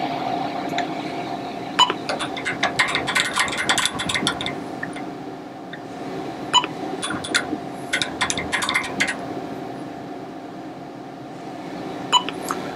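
Suburban Tool MV-14-Q optical comparator running with a steady machine hum, while its work stage is moved to pick points along a line. Two bursts of rapid clicking come from about two seconds in and again from about six and a half seconds in.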